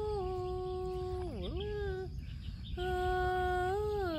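A person humming a slow tune in long held notes, the pitch sliding down and back up, with a short break about two seconds in.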